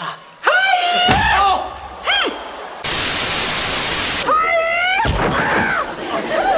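A drawn-out yell and a short cry, then about a second and a half of loud, even static hiss that stops abruptly, followed by more voices.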